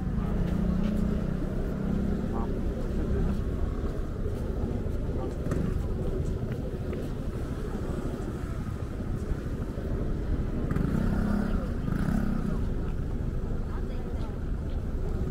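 Busy street ambience: people talking nearby over a steady low rumble of traffic, with voices louder near the start and again about eleven seconds in.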